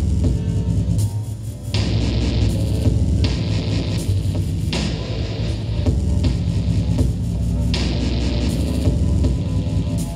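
Live electronic experimental music from laptops and electronics: a dense low throbbing drone, with washes of hiss-like noise that come in and cut off about every three seconds.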